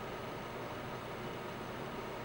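Steady, featureless background hiss (room tone), with no distinct sound standing out.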